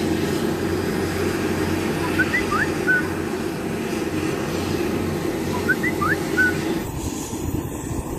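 Steady low outdoor rumble, with a bird's short chirping phrase heard twice, about two seconds in and again about six seconds in.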